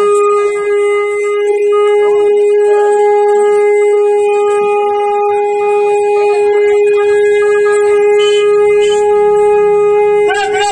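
Conch shell (shankha) blown in one long blast held at a single steady pitch, loud and unbroken.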